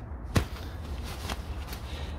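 Hands handling a nylon sleeping bag's shell and hood: one sharp snap or tap about half a second in, then faint rustling of the fabric over a low steady rumble.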